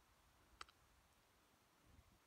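Near silence, broken by one faint, short click about half a second in.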